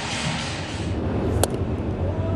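Steady low background rumble of a baseball game broadcast, with one sharp click about a second and a half in.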